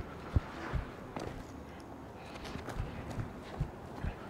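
Footsteps of a person in sneakers running and striding on a concrete sidewalk: a handful of dull, irregularly spaced thuds.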